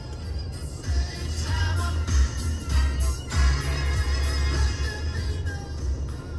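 FM radio music playing loud through an Isuzu D-Max's car stereo speakers, with heavy bass that comes up about a second in. The speakers play cleanly, with no distortion.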